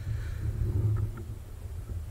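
A steady low hum with faint background noise and two tiny ticks about a second in.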